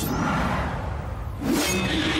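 Sound effects from the TV episode: a slow-motion bullet whoosh fading over the first second, then a sudden sharp hit about one and a half seconds in.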